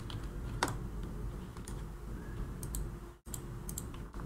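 Scattered computer keyboard keystrokes and mouse clicks, the sharpest about half a second in, over a low steady hum.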